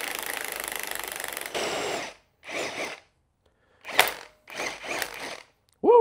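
Impact wrench running on the forcing screw of a two-jaw puller, pulling the lower timing gear off a small-block Chevy crankshaft. It runs steadily for about a second and a half, then fires in several short bursts with pauses between them.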